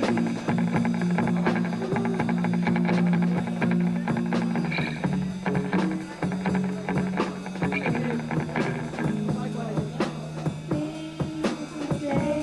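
Live rock and roll band music: a drum kit keeping a steady beat with an upright double bass, over held low notes.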